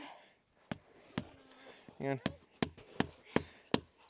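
Orange hammer knocking a spout into a freshly drilled taphole in a birch tree: a series of sharp knocks, a couple in the first half, then coming faster in the second half.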